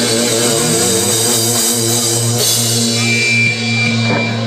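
Live rock band playing loud: electric guitars holding sustained chords over a drum kit, with a sliding note rising about a second in and a high steady whine coming in near the end.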